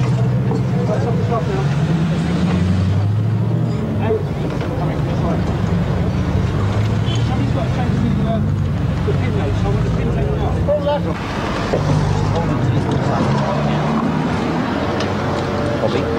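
A car engine running, its pitch rising and falling unevenly, with indistinct voices in the background.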